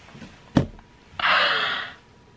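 A sharp click about half a second in, then a woman's loud breathy exhale lasting under a second: an exasperated sigh at having forgotten her lines.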